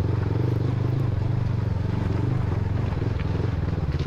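Motorcycle engine running at a steady pitch with a fast, even pulse as the bike rides slowly onto a short rocky section of trail.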